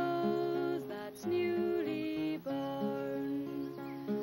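A woman singing with held notes, accompanying herself on a classical nylon-string guitar.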